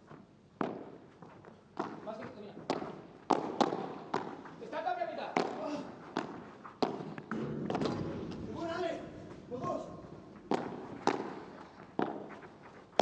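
A padel rally: a padel ball being hit back and forth with solid padel rackets and bouncing on the court, giving sharp pops about every half second to a second.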